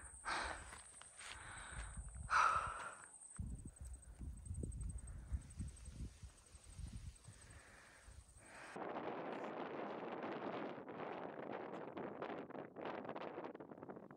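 A hiker's breathing and footsteps climbing a dirt mountain trail, with a few heavy breaths in the first seconds. About nine seconds in, a steady rush of wind takes over.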